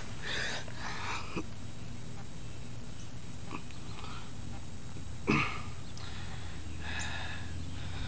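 A person's faint, breathy exhalations, a few at a time, over a steady low hum.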